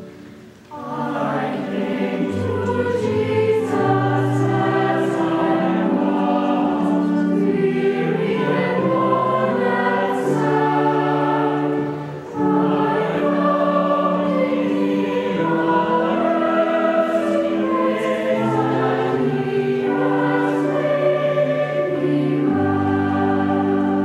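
Mixed church choir singing slow, sustained chords, with a short break between phrases just after the start and another about twelve seconds in.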